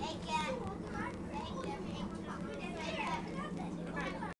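Children's voices chattering and calling out in a train carriage, over the steady low hum of the moving train.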